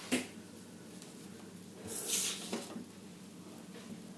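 Handling noise: a short tap near the start, then a brief rustle about two seconds in, as the paper lot label is taken off the table.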